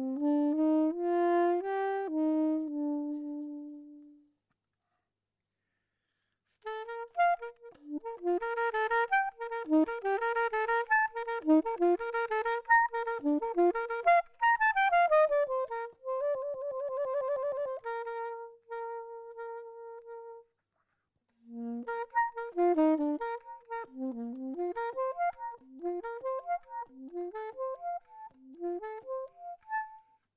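Solo soprano saxophone playing unaccompanied in phrases. It opens with a few held notes and pauses for about two seconds. Then come fast runs, a quivering note, a long held note, another brief pause, and quick leaping figures to the end.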